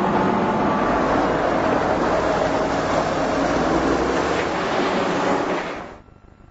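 Heavy diesel road-building machinery running steadily, a continuous engine rumble with noise over it, fading out near the end.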